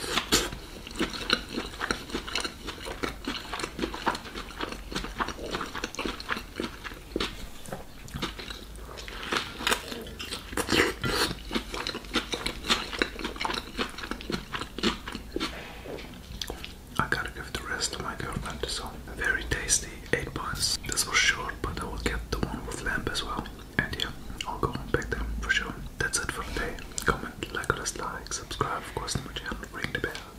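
Close-miked chewing and biting of grilled pork shashlik wrapped in soft flatbread, with many quick wet mouth clicks and smacks throughout.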